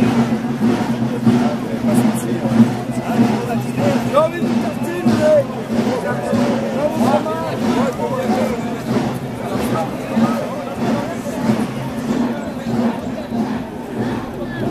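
Marching drums of a folkloric procession beating a steady rhythm, about two beats a second, under voices and crowd chatter.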